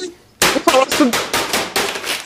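Rapid run of hard bangs and clatters as office objects are smashed against a desk and typewriter. It starts suddenly about half a second in, at roughly seven or eight blows a second.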